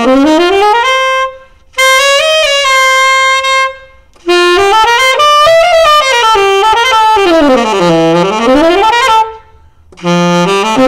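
Selmer Series 44 (TS44M) tenor saxophone played solo: a quick rising run, a phrase of held notes, then a longer line that runs down to a low note and climbs back up, with short breaths between the three phrases.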